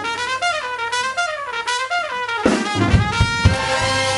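Jazz big band playing live. For the first couple of seconds a lone brass horn plays a bending, wavering melodic line with little beneath it. About two and a half seconds in, the full band comes back in with drums and bass and holds a sustained brass chord.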